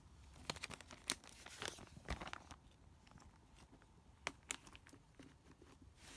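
Clear plastic sleeves and paper cards handled: faint crinkling and rustling with scattered small clicks, busiest in the first couple of seconds, then a few sparse ticks.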